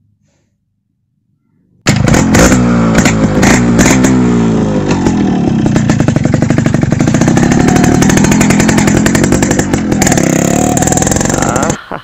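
Yamaha RX100's two-stroke single-cylinder engine revving hard as the bike is ridden, its pitch rising and falling. It starts suddenly about two seconds in and cuts off just before the end.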